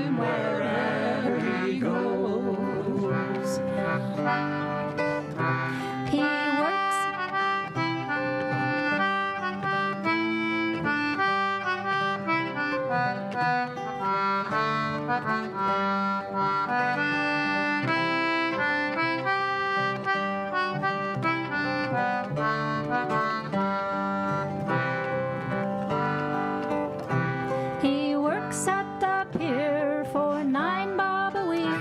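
Acoustic Irish folk band playing an instrumental break between verses of a ballad: a bright stepping melody over strummed guitar and bass. A singer's last held note fades about a second in.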